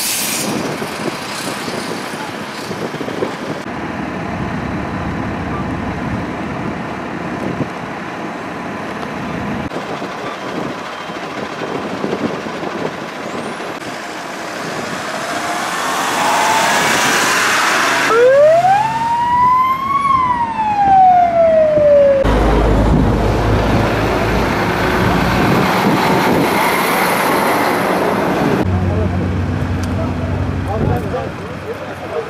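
Emergency vehicle siren sounding one wail that rises and then falls, about two-thirds of the way in, over steady roadside noise of vehicles and voices.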